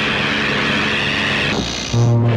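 Film sound effect of a magic energy blast: a loud, steady rushing hiss. About a second and a half in it thins, and a high thin tone rings over it.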